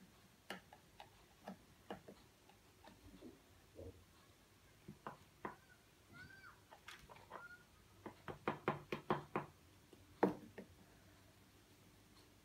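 Light clicks and taps of a teaspoon against a baking soda tub and the bottle neck at the top of a papier-mâché volcano as baking soda is spooned in, with a quick run of about six taps two-thirds of the way through and a sharper knock near the end.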